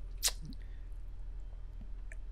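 Pause in a studio conversation: a steady low hum on the recording, with one short sharp click about a quarter second in.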